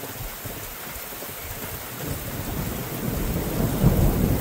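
Steady rain with thunder rumbling in about halfway through and growing louder: the thunder of a close lightning strike, just on the other side of the house.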